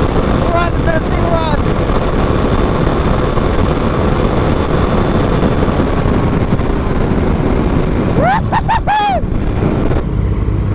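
Wind rushing over a helmet-mounted microphone, together with a Suzuki DR-Z400SM's single-cylinder engine running at road speed. Near the end comes a quick run of four short rising-and-falling pitch sweeps.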